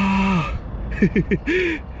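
A man's drawn-out "wow" trailing off with a falling pitch, then a few short bursts of laughter.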